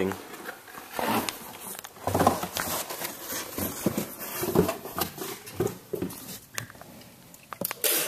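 Indistinct low male voice in short stretches, with quieter handling noise between them and a few sharp clicks near the end.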